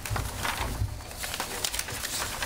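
Sheets of paper rustling and being shuffled close to table microphones, in short crackly bursts over a low rumble.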